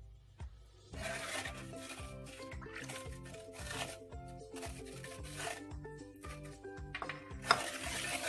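Background music over the scraping of oil being stirred into a beaten egg and sugar batter in a bowl, in a run of strokes with short gaps.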